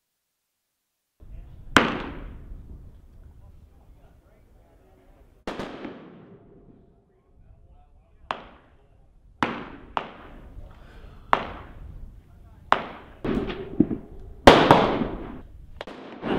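A string of rifle gunshots at a shooting range: about ten sharp reports at irregular intervals, each trailing off with an echo. The loudest come about two seconds in and near the end.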